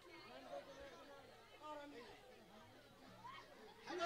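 Near silence with faint, distant chatter of voices.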